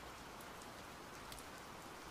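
Faint, steady rain-like background noise.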